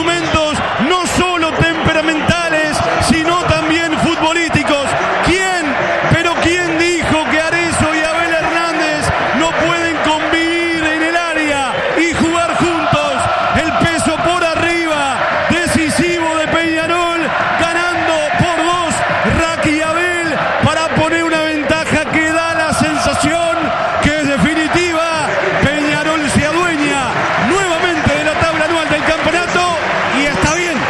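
A man speaking continuously in fast, raised-voice radio football commentary in Spanish.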